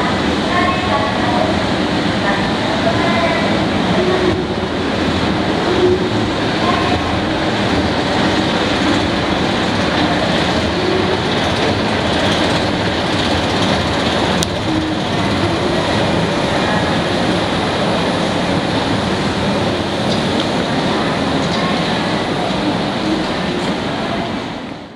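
Steady, even rumble and hiss of a long escalator running upward, carrying on without a break as the ride reaches street level, where outdoor city noise joins it.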